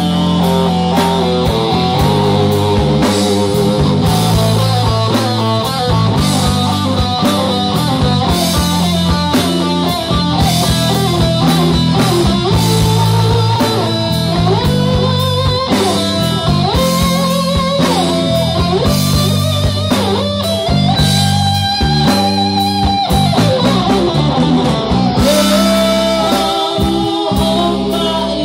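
A rock band playing an instrumental passage at full volume: an electric guitar lead with sliding, wavering held notes over a Tama drum kit and a steady low bass line.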